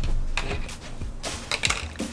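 Cardboard shipping box being handled and set down on a tabletop: a few short, soft knocks and scrapes.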